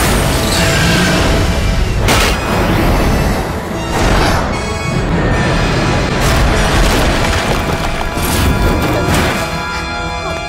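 Cartoon battle soundtrack: dramatic background music mixed with rocket-thruster and impact effects, with several booms spread through.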